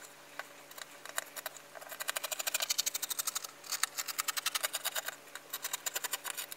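Fabric scissors cutting through cotton fabric backed with fusible fleece: a run of quick, short snips, scattered at first, then coming thick and fast from about two seconds in, with a brief pause in the middle.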